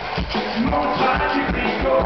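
Live band music with a steady beat, about four beats a second, including electric bass and a metal rubboard (frottoir) worn on the chest and scraped by hand for rhythm.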